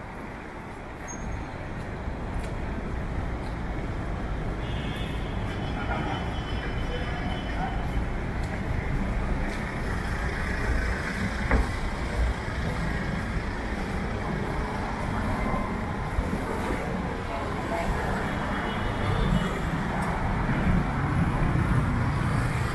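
City road traffic: cars and motorbikes passing on a multi-lane avenue, a steady rumble that grows louder toward the end.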